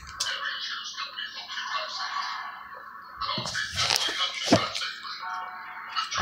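Music from a television playing in the background, with crackling of a trading-card pack wrapper and cards being handled about halfway through.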